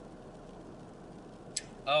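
Steady low hum inside a stationary car with its engine idling, broken by a brief click about one and a half seconds in, then a man says "Oh."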